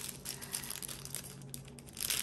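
Small clear plastic packaging bag crinkling faintly in the fingers as it is handled and opened, with light scattered crackles.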